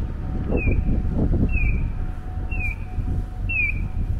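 Japanese audible pedestrian crossing signal sounding an electronic bird-like chirp that falls in pitch, repeating about once a second while the walk light is green. Low street and footstep noise runs underneath.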